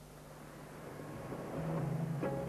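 Rushing noise of a boat under way on open water, swelling louder. Music begins to come in near the end.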